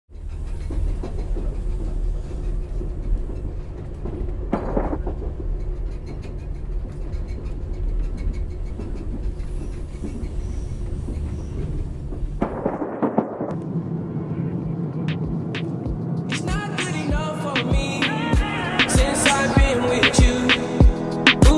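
A steady low rumble of a moving train carriage for about the first twelve seconds. It then gives way to music that builds into a steady beat from about sixteen seconds in.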